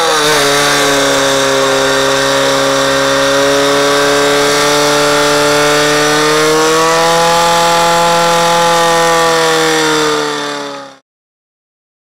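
Portable fire-sport pump engine running flat out at a steady high pitch while it drives water through the hoses to the targets. Its pitch rises slightly about seven seconds in, and the sound fades out about eleven seconds in.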